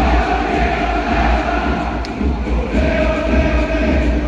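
A large stadium crowd of Suwon Samsung Bluewings supporters singing their club chant in unison, in long held notes over a steady low rumble.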